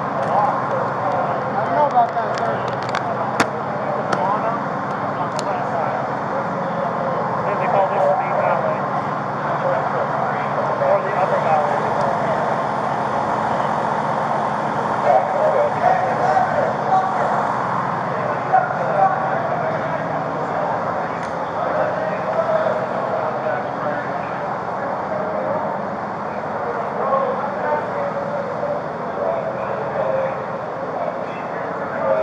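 A steady din of many indistinct voices over running vehicles, none of it clear enough to make out words, picked up on a police body-worn camera. A few sharp clicks come in the first few seconds.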